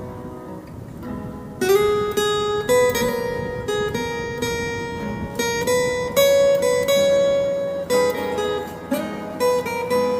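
Acoustic guitar played with a pick, a single-note melody high on the neck with each note ringing on. It is softer at first, and firmer picked notes come in just under two seconds in.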